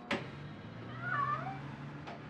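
A sharp click as the room door's latch is opened, then a domestic cat meows once, a short bending call about a second in.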